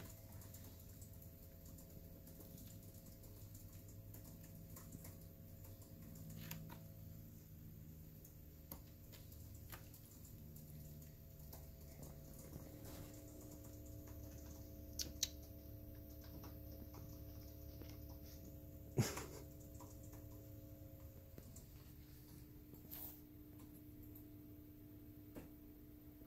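Quiet room tone with a faint steady hum, broken by a few soft clicks; the sharpest click comes about nineteen seconds in.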